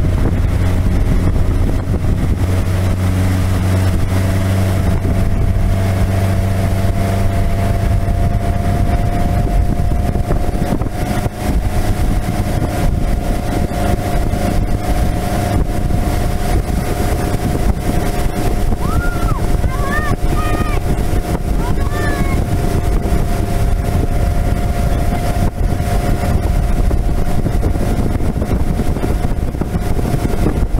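Motorboat engine running steadily at speed while towing a tube, with wind on the microphone and water rushing past. A voice calls out a few short high notes about two-thirds of the way through.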